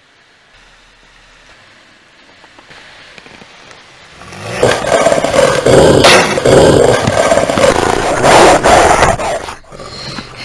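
Wolves growling and snarling, starting loud about four and a half seconds in and breaking off near the end.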